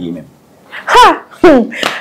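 Speech only: a few short spoken words with a brief pause before them.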